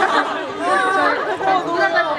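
Several people talking at once in lively conversation.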